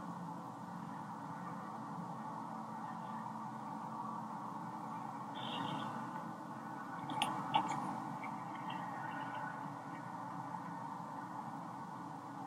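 Low, steady background hiss of an outdoor night-time phone recording, with a faint short sound about five and a half seconds in and a few faint ticks a little over seven seconds in.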